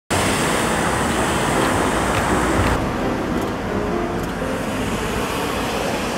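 Steady city street traffic noise from passing vehicles, its hiss thinning a little about three seconds in.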